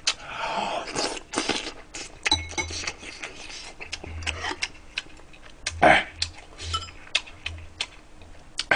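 A man eating with a metal spoon and chopsticks: scattered sharp clicks and clinks of the utensils against ceramic bowls, between wet chewing mouth sounds.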